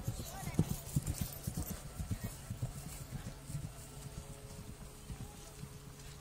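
Pony's hoofbeats thudding on grass turf at a canter, an irregular run of dull low thumps that thins out and fades over the second half.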